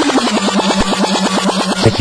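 Techno synthesizer line with no kick drum: a buzzing note pulsing about a dozen times a second. Its pitch slides down in the first half-second, then holds steady.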